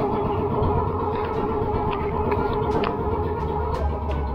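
Outrigger boat's engine running at a steady drone.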